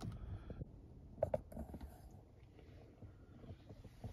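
Faint handling noise from the loosened plastic dome light console and its mounting as it hangs free from the headliner, with two short light clicks about a second in.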